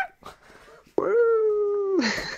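A man's voice holding one long note that falls slightly in pitch, starting about a second in, after a short lull.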